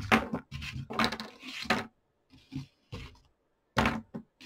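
A round paint mixing palette being slid across a drawing board, scraping and rubbing for about two seconds, followed by a sharp knock near the end as something is set down.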